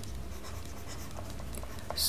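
Stylus scratching across a writing tablet as characters are handwritten, faint and steady, over a low hum.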